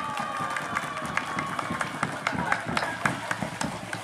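Crowd applause after an opening announcement: many separate hand claps, uneven and scattered, with a faint murmur of voices under them.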